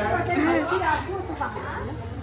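Several people talking at once: overlapping, unintelligible chatter of a group gathered in a room.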